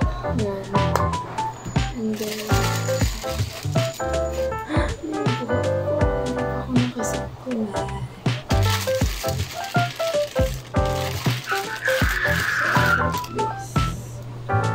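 Background music: an upbeat instrumental track with a melody over a steady beat.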